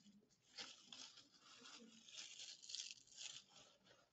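Near silence: quiet classroom room tone with a few faint, brief rustling noises.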